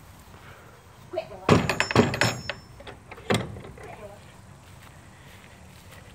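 Door of a wooden-framed wire-mesh pen banging and rattling: a quick cluster of knocks about a second and a half in, then one more sharp knock a little after three seconds.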